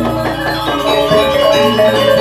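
Balinese gamelan music: metallophones play a busy, steady melody over sustained low tones.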